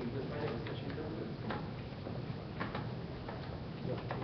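Faint, indistinct voices in a room, with a few scattered sharp clicks.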